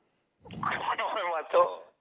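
Speech only: a voice talking over a phone line, thin and cut off in the highs, starting about half a second in.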